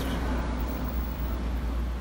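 Steady low background rumble with no distinct sounds in it.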